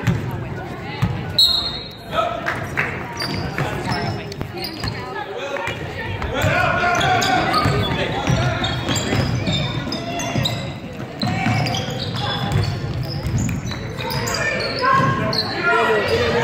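A basketball bouncing repeatedly on a hardwood gym floor as it is dribbled during play, under continual indistinct chatter and calls from players and spectators, echoing in a large gymnasium.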